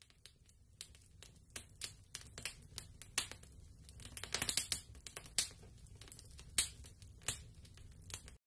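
Fire crackling sound effect: irregular pops and crackles over a low steady rumble.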